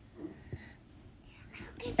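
Quiet whispered speech, soft and broken, with no clear words.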